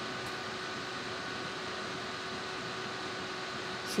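Steady background hiss with a faint steady hum, unchanging throughout; no distinct event is heard.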